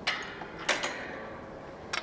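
A few sharp clicks and knocks, the loudest about two-thirds of a second in and another near the end.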